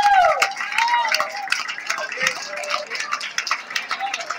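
A tenor's held final sung note falls away about half a second in, and the audience claps with scattered shouts and voices.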